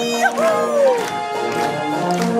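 Live folk band music with held, steady chords, likely a village brass band. In the first second a single voice gives a short falling whoop over the music.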